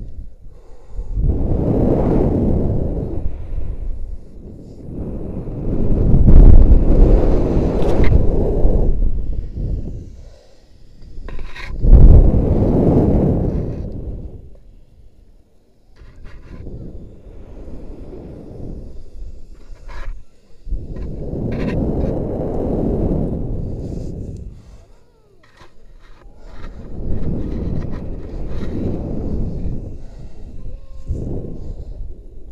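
Wind buffeting an action camera's microphone as the jumper swings on the rope. The rushing swells and fades in waves about every five seconds, one for each pendulum pass, with a few sharp clicks in between.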